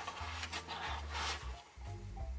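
Hands handling a cardboard advent calendar box, its lid lifting open and skin rubbing softly over the cardboard drawers, over quiet background music.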